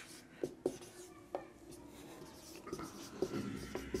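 Felt-tip marker writing on a whiteboard: faint squeaky strokes and small taps as Bengali letters are drawn.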